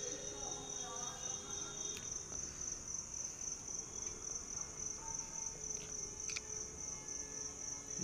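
Insects buzzing in a steady, unbroken high-pitched drone, with faint street sounds underneath.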